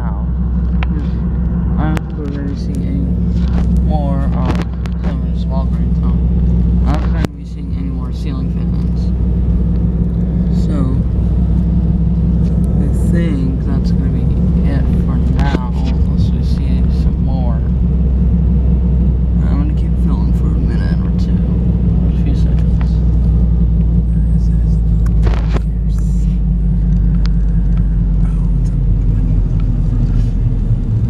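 Steady low rumble of a car's engine and tyres heard from inside the cabin while driving, briefly dipping about seven seconds in.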